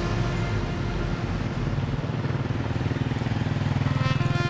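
Road traffic passing close by: a car and motorbikes going past with their engines running, a steady dense rumble. Quiet background music plays under it.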